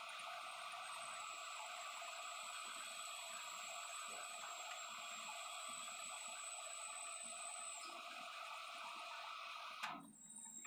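Manual metal lathe running with a shaft spinning in the chuck: a steady mechanical whir with a thin high whine through most of it. A sharp click near the end as the lathe is stopped, after which the sound falls away.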